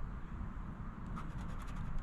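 A poker-chip-style scratcher scraping the coating off a scratch-off lottery ticket in short, faint strokes, mostly in the second half.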